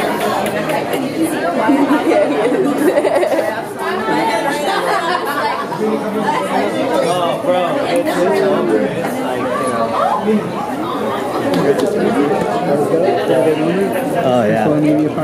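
Many people chatting at once, overlapping voices with no single speaker standing out.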